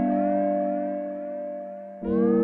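Synthesizer patch on an Alesis Fusion, from the UltraSynth sound set: a held chord with many overlapping pitch glides that swoop up and down over it, fading away through the two seconds. A new chord starts right at the end.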